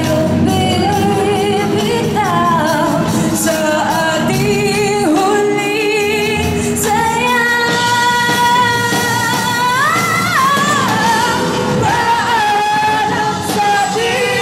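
Live rock band playing: a female lead singer over electric guitars, bass and drums. Midway she holds one long note for about three seconds.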